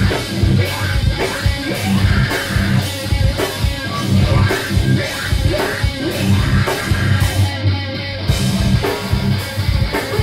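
Metalcore band playing live: loud electric guitar riffs over a drum kit with kick drum and cymbals in a steady rhythm. The cymbals drop out briefly about eight seconds in.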